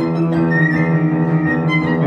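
An erhu and a piano playing a duet, with the erhu bowing a sustained, gliding melody over the piano's accompaniment.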